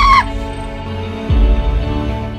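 Dramatic film-score music with sustained tones and a deep booming hit about a second and a half in. A short high cry, falling in pitch, sounds at the very start.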